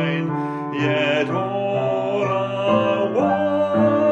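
Worship song: a voice singing long held notes over instrumental accompaniment.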